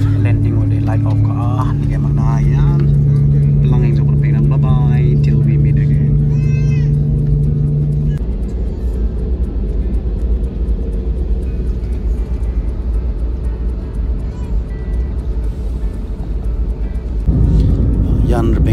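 Airliner cabin noise while the plane taxis: a steady low engine and rolling rumble, with voices and a steady hum in the first few seconds. The rumble grows louder near the end.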